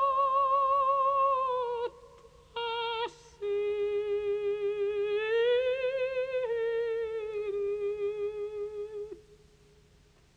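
A recorded operatic soprano singing long held notes with a wide vibrato, the voice alone to the fore; after a short break she takes a brief note, then one long phrase that dies away about nine seconds in.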